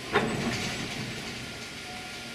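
Victorian Railways R class steam locomotive on a railway turntable: a sudden heavy thump just after the start, then a steady rumble.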